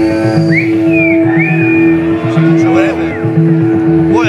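Live rock band playing: electric guitars over bass and drums, with a steady held note, a repeating low rhythm, and a high lead line that swoops up and down in pitch.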